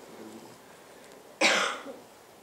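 A single short cough about one and a half seconds in, over faint room tone.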